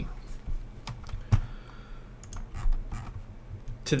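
A few scattered key taps and clicks on a computer keyboard, spaced irregularly, over a low steady hum.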